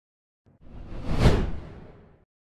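A whoosh transition sound effect for animated on-screen text. It is a single swelling rush of noise with a deep rumble underneath. It starts about half a second in, peaks a little after a second in, and fades away near the end.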